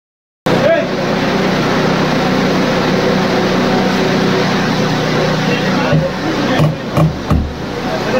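Firefighters working an apartment's wooden entry door open: a few heavy thuds and knocks about six to seven and a half seconds in, over a steady rushing noise with a low hum.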